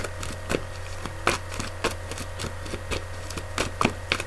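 A few light, scattered clicks and taps of tarot cards being handled while another card is drawn from the deck, over a steady low electrical hum.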